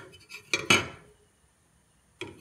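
Steel saw-blade axe head clinking as it is handled on a wooden workbench: a couple of sharp metallic clinks just over half a second in.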